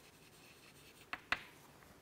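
Chalk writing on a chalkboard: faint scratching with two sharp taps of the chalk against the board about a second in, a fraction of a second apart.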